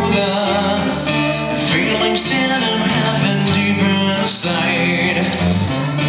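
A live song with a steel-string acoustic-electric guitar being strummed and a male voice singing.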